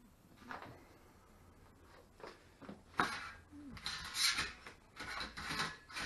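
Handling noises on a workbench: a sharp click about three seconds in, then a run of short scraping and rattling sounds.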